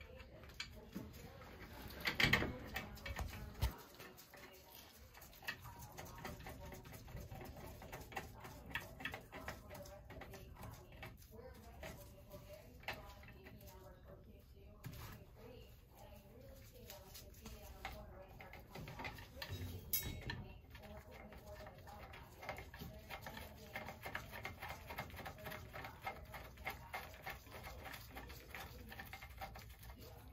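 Scattered light clicks and metallic taps of hand work on a hot-water circulator's pipe flanges as the flange bolts are fitted and threaded hand-snug. There is a louder knock about two seconds in and another around twenty seconds in.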